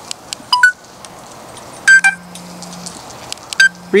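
Insta360 Ace Pro action camera beeping as its record button is pressed to start and stop recording. First comes a short rising two-note beep, then a louder single beep about two seconds in with a low buzz lasting about a second, and another short beep with a brief buzz near the end.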